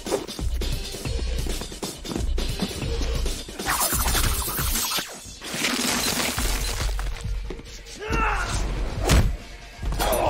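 Action-film fight soundtrack: techno music with a pulsing bass, over which a vampire bursts apart in loud hissing, crackling bursts of disintegration, about four and six seconds in. A sharp heavy impact comes near the end.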